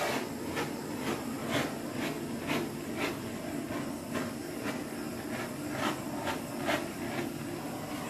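Handheld gas torch burning with a steady hissing flame, played over wet acrylic pouring paint to heat it, with occasional faint ticks.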